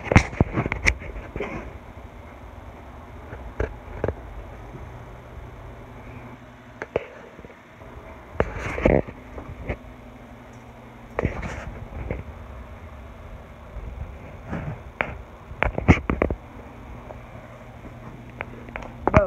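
Close handling and rustling noises from a handheld phone being moved about, scattered short knocks and rustles with clusters about halfway through and near the end, over a steady low hum.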